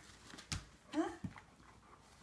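A dog playing tug with a rope-and-ball toy on a hardwood floor, with one sharp knock about a quarter of the way in.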